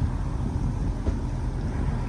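Steady low rumble of outdoor background noise, with wind buffeting the microphone.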